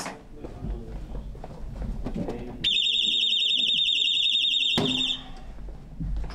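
Electronic alarm sounding a loud, rapidly warbling high-pitched tone for about two seconds, starting a little before halfway and cutting off abruptly.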